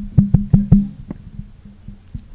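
Handheld microphone handling noise: about six sharp thumps in quick succession during the first second, each with a brief low ring, then faint bumps as the microphone is passed along.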